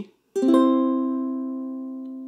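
Concert ukulele strummed once on a C major chord about a third of a second in, the strings sounding in quick succession, then the chord rings on and slowly fades.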